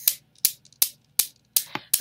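Newton's cradle, its steel balls clacking against each other in a steady rhythm of sharp clicks, about three a second, with four balls swinging at once.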